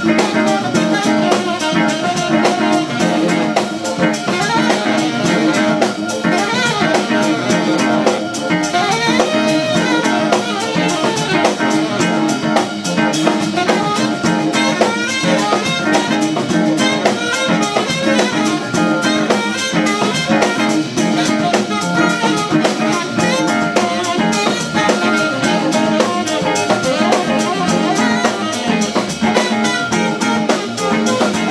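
Live band playing an instrumental jazz tune: tenor saxophone and trumpet over electric guitar, bass, organ and a drum kit keeping a steady beat.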